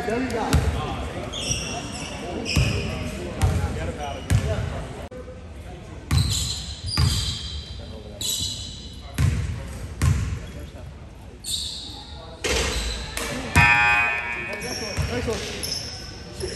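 Basketball bouncing on a hardwood gym floor, about ten separate thumps at uneven intervals, with voices and short high squeaks echoing in the gym.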